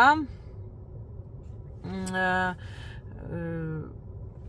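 A person's voice making two short wordless hesitation sounds, one held at a steady pitch about halfway through and one falling in pitch near the end, over faint steady room hiss.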